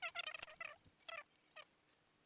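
Domestic fowl calling: a few faint, short pitched calls in quick succession, the first two the longest.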